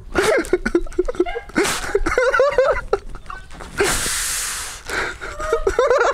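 Wordless vocal sounds from a person, a voice rising and falling, then a loud breathy burst like a sharp gasp or exhale lasting about a second, a little before the end.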